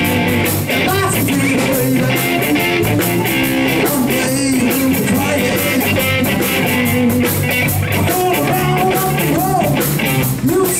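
Live three-piece rock band playing a blues number: electric guitar, electric bass guitar and drum kit, loud and continuous.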